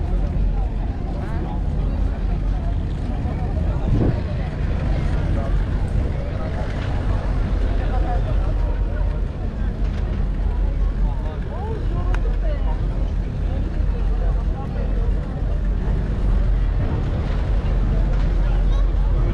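Steady low hum of passenger ferry engines, with scattered voices of people talking nearby and a brief knock about four seconds in.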